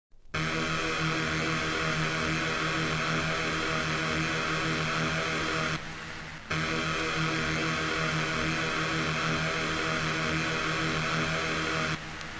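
Opening of a 1997 hardcore techno track: a sustained electronic synthesizer drone at one steady pitch, with no beat, dipping briefly about six seconds in.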